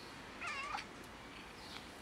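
A cat meows once, briefly, about half a second in, its pitch wavering slightly.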